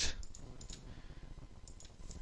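Computer mouse clicking: one click right at the start, then a few faint clicks over low room noise.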